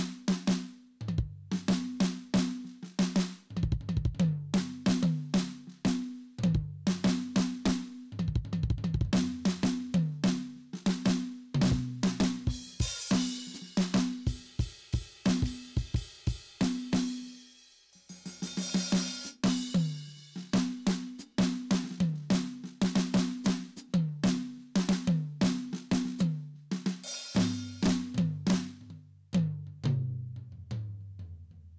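Simmons SD1250 electronic drum kit playing its Birch Studio kit sound: a fast freestyle groove of kick, snare and pitched tom hits. Cymbals wash over the playing in the middle, with a brief pause just after.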